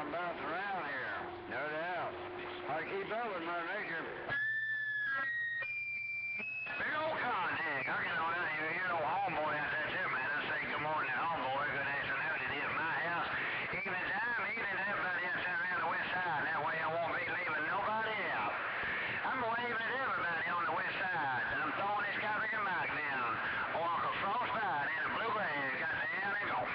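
A voice talking over a CB radio, received from another station and coming through the radio's speaker. About four to six seconds in, the talk breaks for a few electronic beeps stepping up in pitch.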